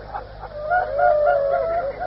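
Mourners in a majlis audience weeping and wailing aloud: several voices in long, wavering cries that overlap one another, heard on an old, dull-sounding tape recording.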